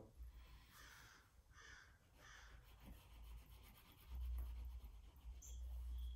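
Faint rubbing of an oil paint stick on unprimed rag paper: three short strokes about a second in, then lighter scuffing, with a low rumble over the last two seconds.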